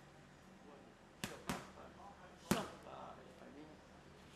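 Three sharp smacks of boxing-gloved punches landing on focus mitts: two in quick succession a little over a second in, then a louder one about a second later, with a faint voice between.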